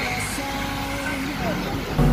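Road traffic noise heard from a vehicle moving along a city street: a steady rushing wash with a faint tune underneath.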